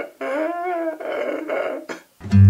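A man crying aloud in long wailing sobs: two drawn-out cries, the first rising then falling in pitch, then a short one near the end.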